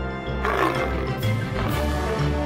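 Background music with a big-cat roar sound effect coming in about half a second in, a rough growl that drops in pitch.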